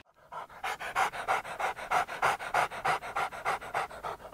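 A dog panting in quick, even breaths, about six or seven a second, starting about half a second in; it is panting because it's hot.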